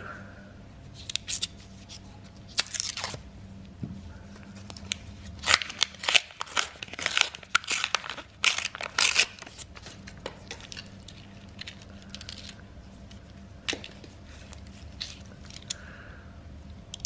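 Paper wrapper of a roll of 2-euro coins being slit and torn open by hand: irregular bursts of ripping and crinkling paper, busiest in the middle.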